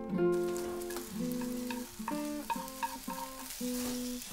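Food sizzling in a frying pan, beginning shortly after the start, under a slow line of single plucked guitar notes from the score.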